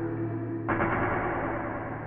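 An electronic track playing back from the production session: a sustained low bass note runs throughout, and a dense, brighter sound layer comes in suddenly just under a second in.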